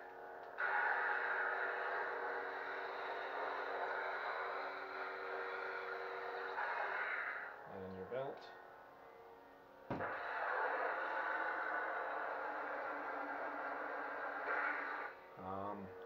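Neopixel lightsaber playing its lightning block effect through the hilt speaker: a sustained electric crackle over the blade's steady hum, held twice, about seven and then five seconds, with a short quieter lull and a sharp crack between.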